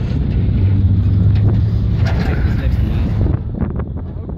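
Wind rushing over the microphone in the open bed of a moving pickup truck, over the truck's low engine and road noise; a steady low hum holds through the middle and eases near the end.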